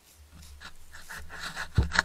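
A young red deer sniffing right at the trail camera's microphone: a quick run of breathy snuffles that grows louder, with a sharp knock against the camera near the end.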